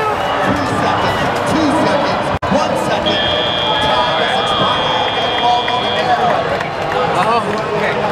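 Crowd noise and voices filling a large arena. About three seconds in, a steady high-pitched electronic tone sounds for about three seconds, and there is a split-second dropout in the sound just before it.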